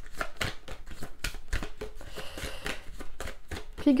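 A deck of large oracle cards shuffled overhand by hand: a fast, uneven run of soft flicks and taps as the cards slide off the pack.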